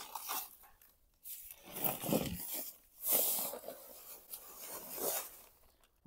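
A heavy paper sack of Quikrete concrete mix being torn open in several ripping bursts, then the dry mix pouring out of the sack into a wheelbarrow.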